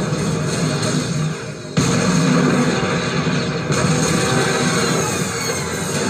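Action-film soundtrack played from a TV: loud dramatic score with battle effects, cutting in suddenly with a loud hit a little under two seconds in.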